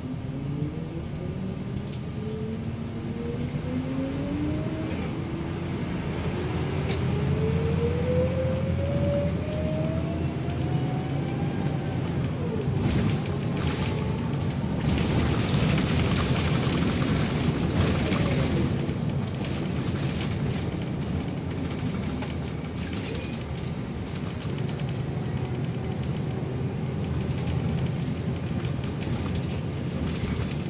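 City bus engine and drivetrain heard from inside the cabin: a steady rumble with a whine that climbs in pitch twice over the first dozen seconds as the bus picks up speed. It gets a little louder and rougher around the middle.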